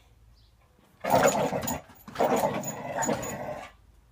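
A dog vocalising in two bouts, the first about a second in and a longer one starting about two seconds in, with a Kong rubber toy held in its mouth.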